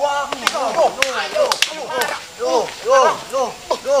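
Men shouting short repeated cries while scuffling, with several sharp smacks among them.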